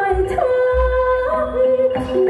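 A woman sings a long, ornamented melody through a microphone and PA, over amplified band accompaniment with deep bass notes.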